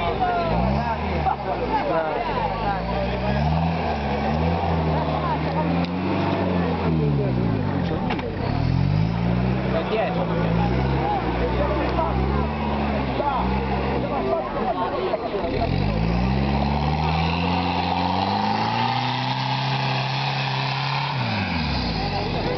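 Off-road 4x4's engine revving up and down in repeated surges under heavy load as it claws along a steep dirt slope with its wheels spinning, ending in one long rise and fall of revs near the end.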